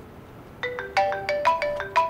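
Mobile phone ringtone playing a quick tune of short, clear notes, starting about half a second in after a brief pause between repeats.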